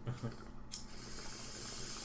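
A steady high hiss that starts just under a second in.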